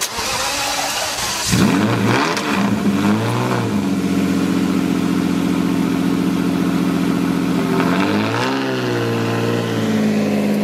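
Lamborghini Diablo SV's V12 starting up about one and a half seconds in, revving up and down a couple of times before settling into a steady idle. Near the end it is blipped once more, a short rise and fall in pitch.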